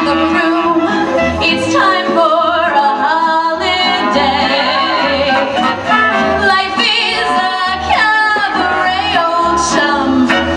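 A woman singing into a handheld microphone over musical accompaniment with a steady bass beat, her voice gliding and wavering between held notes.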